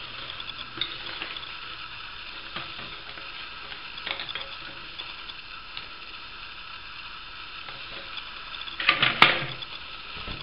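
Gloved hands working an old rubber seal off a plastic toilet flush valve: soft rubbing and crackling handling noise with small clicks over a steady hiss. About nine seconds in comes a short, louder clatter as the plastic valve is knocked and set down in a ceramic basin.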